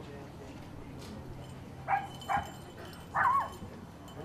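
A dog giving three short, high yips in quick succession about halfway through, the last one a little longer.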